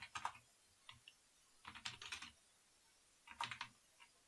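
Faint typing on a computer keyboard, in about four short bursts of keystrokes with pauses between.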